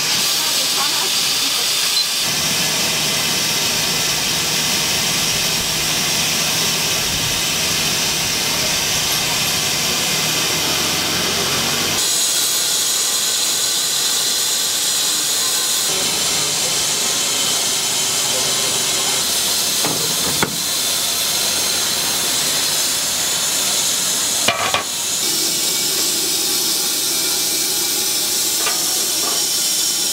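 Steam hissing steadily from large aluminium dumpling steamers, with a couple of brief knocks.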